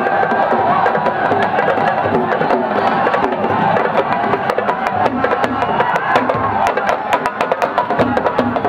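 Fast Senegalese sabar drumming, sharp wooden-sounding strokes that come thicker and faster in the second half, over a mass of voices.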